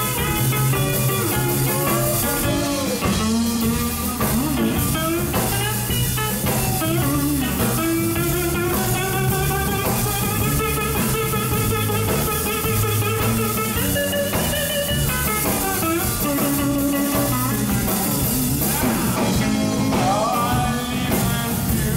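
Live band playing an instrumental break: an electric guitar lead with bent and held notes over upright bass and drum kit.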